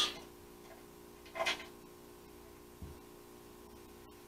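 Quiet workshop room tone with a steady hum, broken by small sounds of hand-tool work at a motorcycle frame's centre stud: a brief clink about one and a half seconds in and a soft low knock near three seconds in.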